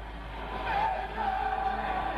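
Live heavy metal concert recording: a singer's voice wavers, holds a long high note, then slides down at its end, over the band and crowd.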